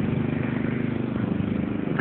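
Riding lawn mower's engine running steadily under load while cutting grass, a low even drone.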